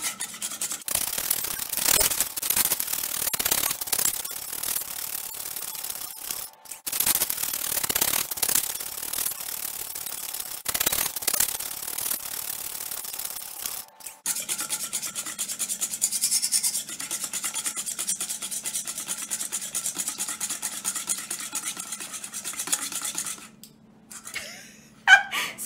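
Wire balloon whisk beating butter and buttermilk in a stainless steel bowl: rapid scraping strokes of the wires against the metal, with short pauses about 7 and 14 seconds in. The whipped cream has split into butter solids and buttermilk, the last stage of churning.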